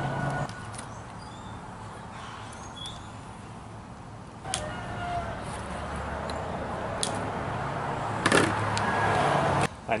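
Small clicks and clinks of a wire fishing leader and metal hooks being handled and threaded on a plastic tabletop, with a louder clatter about eight seconds in, over a steady low hum.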